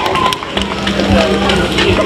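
Several voices talking over background music, with a steady held note coming in about half a second in.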